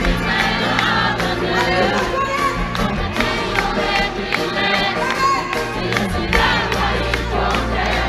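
Live band playing through an outdoor festival PA, with the crowd singing along, heard from inside the audience.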